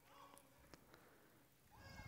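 Near silence in a quiet room, broken by two faint, brief high-pitched vocal sounds, one just after the start and one near the end, and a couple of faint clicks.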